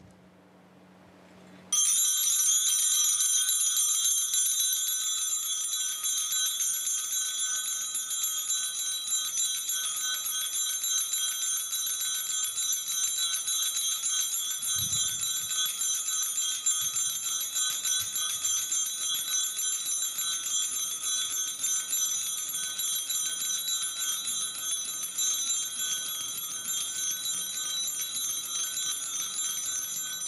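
Small altar bells rung continuously in rapid ringing for the benediction, as the monstrance is raised in blessing. The ringing starts suddenly about two seconds in and cuts off at the end.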